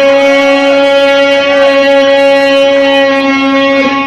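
A man's voice holding one long, loud, steady note: a drawn-out cry over a goal celebration.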